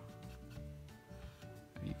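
Soft background music with sustained notes. Under it, a cotton bud dampened with lighter fluid rubs faintly across a cardboard box flap.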